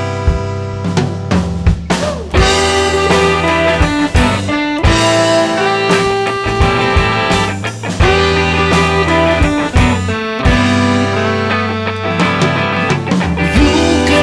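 Live rock band playing an instrumental passage, with electric guitars, bass guitar and drum kit.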